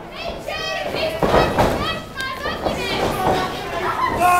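Children in the audience yelling and calling out over one another, high-pitched and overlapping, with a short thud from the ring about a second and a half in.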